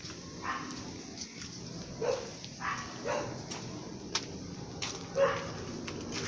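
A dog barking several times, short separate barks spread over a few seconds.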